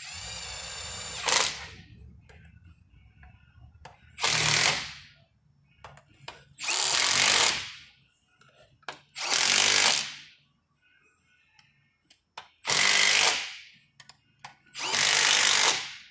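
Cordless impact driver turning the bolts of a bearing puller on a shaker box: one run of just over a second at the start, then five bursts of about a second each, a couple of seconds apart.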